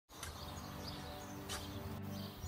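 Soft background music with held low notes, over birds chirping. Two short scrapes, a spade cutting into garden soil, come about a quarter second in and again about a second and a half in.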